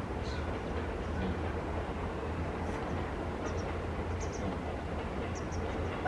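Steady low rumble of background noise, like distant traffic or trains, with several faint, very short high chirps from a small bird scattered through it.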